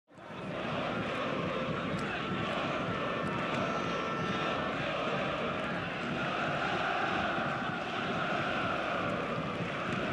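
Steady stadium ambience under a football match broadcast, fading in at the start and then holding level, with no commentary.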